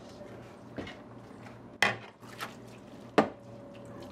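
Dishes being washed by hand in a kitchen sink: a few sharp clinks and knocks of dishes against each other and the sink, the loudest about two seconds in and a little after three seconds.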